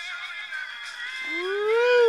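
A man singing a long wordless note that starts about a second in, rises in pitch and then slides back down, like a howl.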